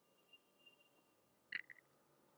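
Near silence, with a brief cluster of computer mouse clicks about one and a half seconds in. A faint high whine lies underneath before the clicks.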